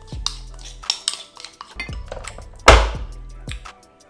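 Background music with a steady bass line, over clinks and scrapes of a spoon against a bowl as batter is spooned into a mini waffle maker. One loud knock comes about two-thirds of the way through.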